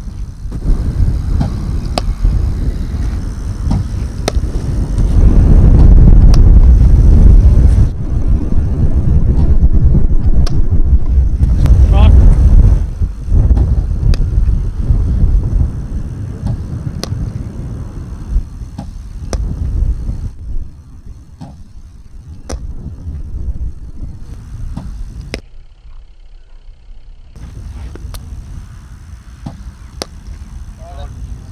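Cricket net practice: scattered sharp knocks, fitting a ball struck off the bat and fired from a bowling machine, over a loud low rumble that swells about five seconds in and eases off after about thirteen seconds.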